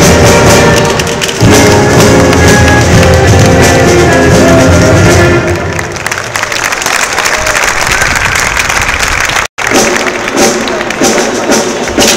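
Lively dance music with a melody and drums plays loudly, then fades out about halfway through. After a short break, sharp wooden knocks come at irregular intervals: dancers striking wooden sticks on the stone pavement.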